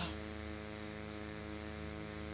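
Steady electrical hum from the church sound system, a stack of even tones held without change.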